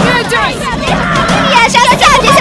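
A group of high-pitched cartoon character voices shouting together, many voices overlapping at once, starting suddenly.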